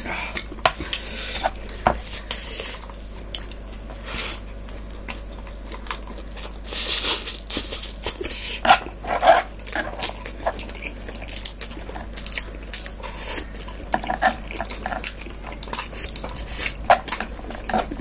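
Close-up eating sounds: a metal fork and chopsticks clicking and scraping against plastic bowls and a tray, with noodles being slurped and chewed. The clicks are short and irregular, with a longer slurp about seven seconds in.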